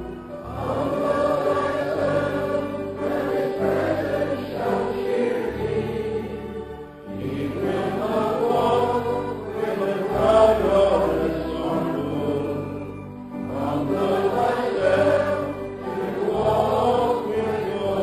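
A group of voices singing a slow hymn over instrumental accompaniment with held bass notes, in long phrases with short breaths between them, about seven and thirteen seconds in.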